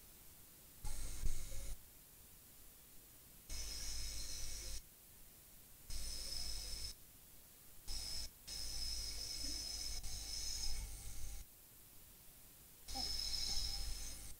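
Hot air rework station blowing in six separate bursts, the longest about three seconds, each with a steady high whine over the rush of air, while a surface-mount chip's solder is reflowed onto its pads.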